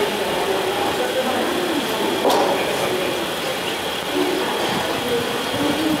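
Passenger express train rolling slowly along a station platform, its running noise steady, with indistinct voices over it. A single sharp clank comes about two seconds in.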